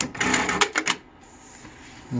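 JUKI DDL-9000C single-needle industrial lockstitch machine sewing a quick, clattering burst of stitches, then stopping about a second in. It halts on its own at the stitch count it was taught, before the end of the piece.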